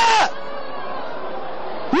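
A commentator's excited cry of 'ah!' with a high, rising-then-falling pitch, cut off about a quarter second in, then steady background noise of the stadium broadcast, with another short exclaimed cry right at the end.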